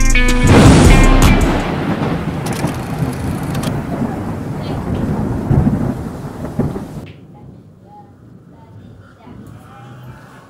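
A loud clap of thunder about half a second in, rumbling on and fading over several seconds, during a tropical storm. The sound drops off abruptly about seven seconds in.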